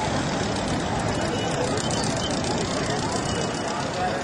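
People talking over a steady, dense rushing background noise.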